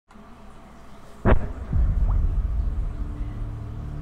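Film-trailer sound design: a low rumble, then a sharp hit about a second in. A deep boom follows and settles into a steady low drone.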